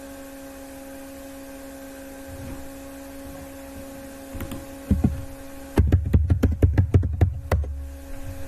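Typing on a computer keyboard: a quick run of about a dozen keystrokes in under two seconds near the end, after a single thump about five seconds in. A steady hum runs underneath throughout.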